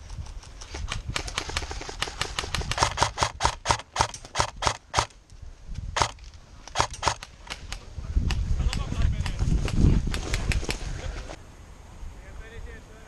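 Airsoft electric rifle (AK-pattern AEG) firing a string of single shots: sharp snaps coming irregularly, a few tenths of a second apart, some in quick pairs. About eight seconds in the shots thin out under a low rumble of movement close to the microphone.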